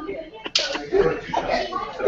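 A single sharp smack about half a second in, followed by faint voices.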